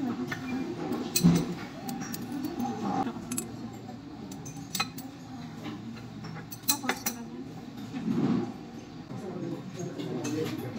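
Glass laboratory glassware clinking a few times, a glass pipette and Erlenmeyer flask being handled, with the loudest clink about a second in and more near the middle, over low indistinct chatter of voices.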